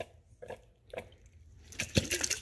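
Whole stewed tomatoes sliding out of a glass jar and dropping onto chopped cabbage in a pot: a few soft, wet plops, with sharper ones near the end.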